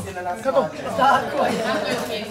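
Several people talking over one another in a room: low, overlapping background chatter.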